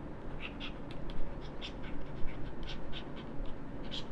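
Stylus writing on a pen-tablet screen: faint, short scratchy strokes, several a second, over a low steady room hum.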